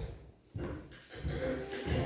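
Thumps and shuffling handling noise at a pulpit as a person steps up to it and gets ready to speak, with a small child vocalizing briefly in the room.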